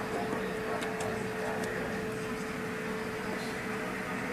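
A steady machine hum with a faint steady tone, and a few light clicks about a second in.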